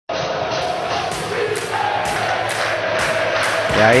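Football stadium crowd chanting in the stands, a steady mass of voices with held sung notes.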